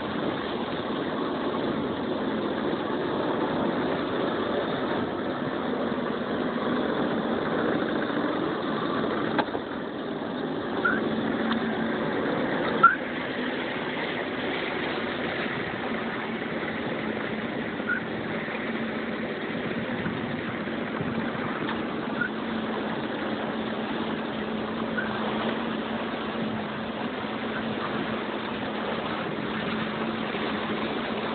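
A boat's motor running steadily over water, played back from a video through room loudspeakers, with a low steady hum growing clearer about halfway through and a few faint short chirps.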